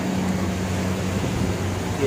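Lit burners of a commercial gas stove burning with a steady rushing noise over a low, constant hum.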